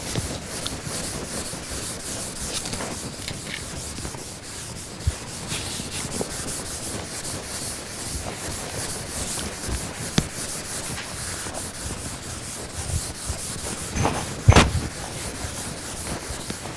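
A board eraser rubbed back and forth across a chalkboard, wiping off chalk in quick repeated strokes, with a few knocks, the loudest shortly before the end.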